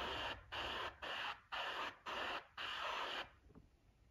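Airbrush spraying paint in about six short bursts of hiss, each under half a second with brief gaps between, stopping a little after three seconds.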